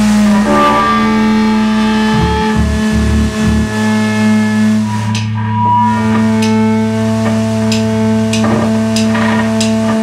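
Amplified electric guitar letting long notes ring and sustain over a steady low drone, with a few sharp ticks in the second half. Full rock-band playing with drums comes in right at the end.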